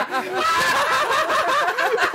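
Several people laughing together, chuckling and snickering.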